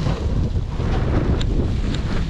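Wind buffeting an action camera's microphone as a steady low rumble, over the hiss of a snowboard sliding through powder, with a couple of light ticks in the second half.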